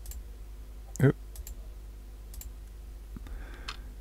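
A computer mouse clicking a few times, faint and sharp. A short vocal sound comes about a second in, and a low steady hum runs underneath.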